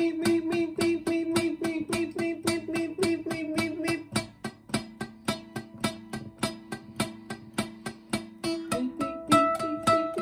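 Acoustic guitar strummed in a fast, even rhythm of about four or five strokes a second, the chord changing partway through. The strumming softens in the middle and grows louder again near the end.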